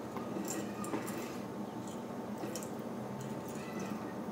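Thin stream of tap water trickling steadily into a sink basin, with a few faint ticks.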